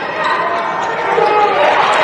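Basketball game broadcast audio: on-court sounds of play echoing in a gym, with a commentator's voice over them.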